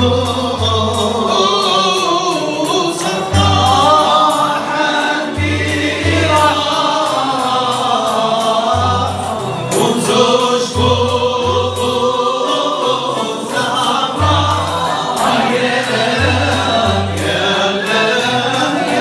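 Moroccan Andalusian (al-Ala) ensemble performing: a chorus of men's voices singing together, with violins bowed upright on the knee, oud and qanun playing along.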